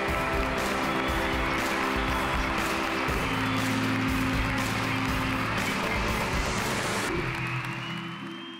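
Title theme music of a TV culture programme, with a steady beat under held chords. The beat drops out about seven seconds in and the music fades toward the end.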